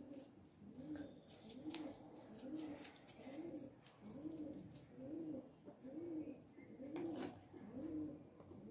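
A pigeon cooing faintly in the background: a low, soft coo repeated steadily about once every second, with a few faint clicks in between.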